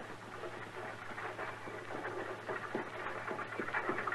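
Radio sound effect of an approaching horse-drawn buggy: scattered hoof clops and wheel noise, growing gradually louder.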